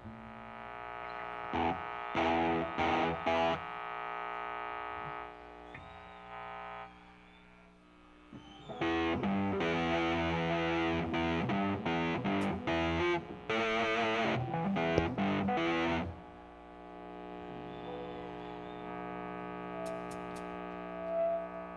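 Distorted electric guitar played loosely through an amplifier between songs. A few short chord stabs and a ringing chord that fades are followed, about nine seconds in, by a run of strummed chords with short breaks. After that comes a steady held tone.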